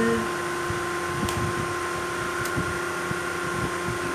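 Steady mechanical hum of a running room appliance, with constant tones over an even hiss. Two faint ticks come about a second apart near the middle.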